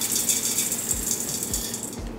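Dry red lentils pouring from a glass jar into a stainless steel Instant Pot inner pot over chopped vegetables: a dense, rapid rattle of many small grains that stops near the end.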